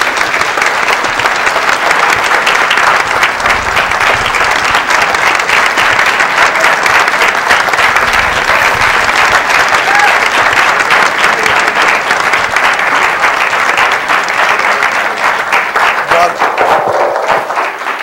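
Audience applauding: a long, steady round of clapping that thins out near the end.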